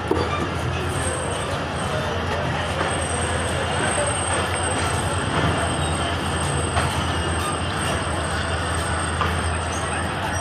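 A passenger train rolling slowly out of a station, heard from an open coach door: a steady low rumble of the coaches on the rails, with a thin, high-pitched wheel squeal running through it.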